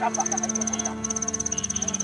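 Crickets chirping in rapid high trills that stop and start, over a steady low hum, with a brief voice near the start.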